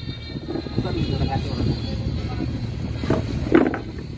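Low, rough rumble of handling noise: the phone's microphone rubbing against a shirt as the camera is moved, setting in about half a second in.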